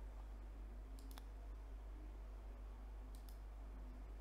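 Faint clicking at a laptop computer: two quick pairs of sharp clicks, about a second in and again near the end, over a steady low hum.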